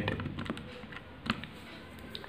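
Keys of a Casio fx-82MS scientific calculator being pressed as a sum is keyed in: a handful of light clicks, the loudest a little after a second in.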